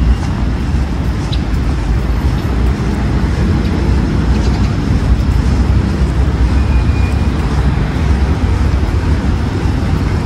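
Steady traffic noise from the surrounding city roads: a low, even rumble.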